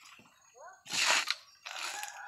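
Fibrous coconut husk crunching and tearing as a coconut is worked on a steel husking spike, with one sharp crunch about a second in.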